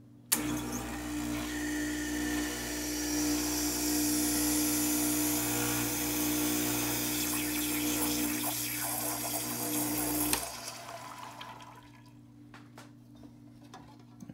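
Stock Gaggia Classic espresso machine's vibratory pump running while a shot is pulled, a steady buzz with water hiss. It starts suddenly just after the start and cuts off after about ten seconds.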